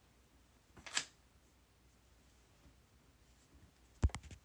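Quiet room tone with one brief, soft hissing noise about a second in.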